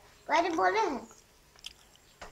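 A young girl's voice saying a short phrase as she recites a multiplication table, then a quiet pause with one faint click.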